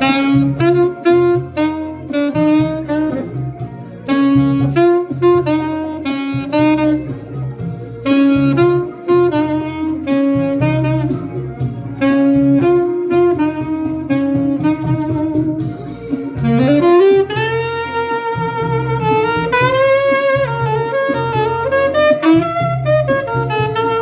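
Saxophone playing a melody over a backing track with a steady bass line, first in short repeated phrases. About two-thirds of the way through it slides up into longer held notes that bend in pitch.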